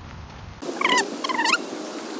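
A bird calls twice, two short high calls about half a second apart, each dipping and then rising in pitch, over a steady hiss.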